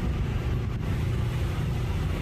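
Steady outdoor background noise: an even low rumble under a broad hiss, with no distinct events.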